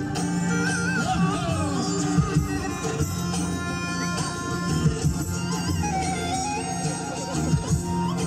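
Traditional folk dance music: a wind instrument plays a wavering, ornamented melody over a steady low drone, with occasional louder beats.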